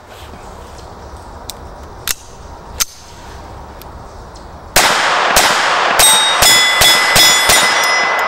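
A few light metallic clicks, then about halfway in a Beretta 21A .22 pistol fires a quick string of about seven shots with Federal bulk-pack ammunition. Several hits set a steel target ringing, and the ringing fades out after the last shot.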